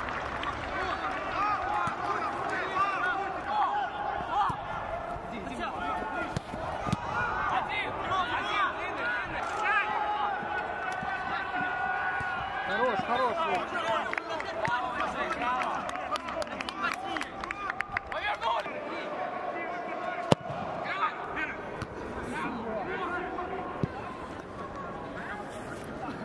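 Footballers' voices calling and shouting on the pitch, with scattered short knocks and one sharp knock about twenty seconds in.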